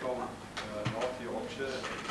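Indistinct talk of several people at the tables, with a few sharp clicks or knocks mixed in.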